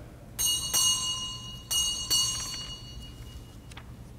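A small high-pitched bell struck four times, in two quick pairs about a second apart, each stroke ringing on and fading: the bell that signals the start of Mass.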